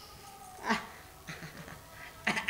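A short wordless vocal sound with a bending pitch about two-thirds of a second in, followed by a few fainter short ones.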